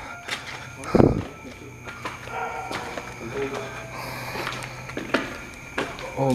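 Footsteps on bare concrete stairs in an empty building, with one heavy thump about a second in and a couple of sharp clicks near the end.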